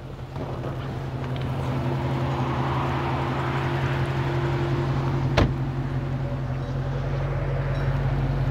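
A car door shuts with a single sharp knock about five seconds in. Under it runs a steady low engine hum, with a rising and fading hiss in the first half.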